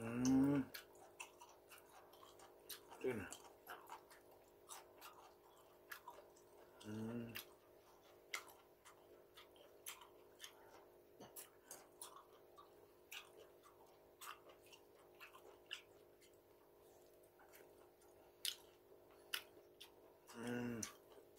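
A man chewing raw sliced fish and webfoot octopus, with many small clicks and three short hums: the first rising, the second falling, the third a little after the middle.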